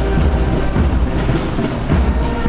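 A marching military band playing, with brass and a bass drum.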